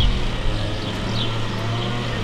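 Outdoor street ambience: a steady low hum under a general haze, with a few faint high chirps.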